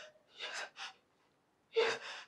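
A woman gasping for breath while being choked by the throat: two short, faint gasps about half a second in, then a louder gasp near the end.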